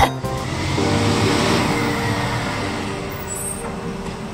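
Cartoon sound effect of a car zooming away: a sudden whoosh of engine and road noise that fades over a couple of seconds, with light background music coming in under it.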